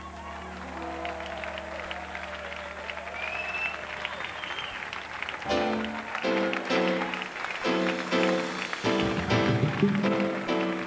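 A salsa band's held chord fades under audience applause and cheering. About five and a half seconds in, the band strikes up again with short, punchy chord stabs in a steady rhythm.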